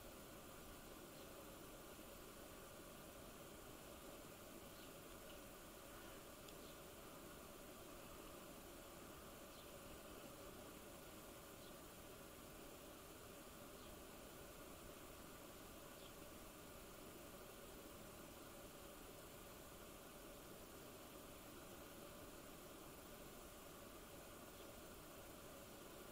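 Near silence: faint steady room-tone hiss with a few very faint ticks.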